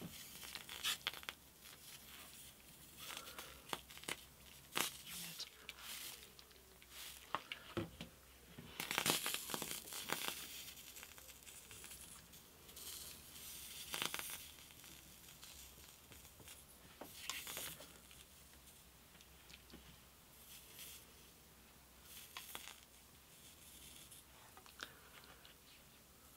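A thin walnut guitar side being pressed and worked around a hot bending iron by hands in leather-palmed work gloves: quiet, irregular scraping and rustling of glove on wood and metal, loudest about nine to ten seconds in.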